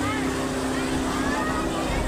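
Motorboat engine running at a steady drone, with water rushing along the hull.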